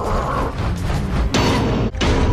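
Animated-film soundtrack: tense orchestral chase music mixed with creaking, clanking metal effects, with a sharp hit about a second and a third in.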